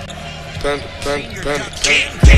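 Live game sound from a college basketball broadcast: a basketball bouncing on the hardwood court over arena noise, with a voice and a brief sharper sound near the end.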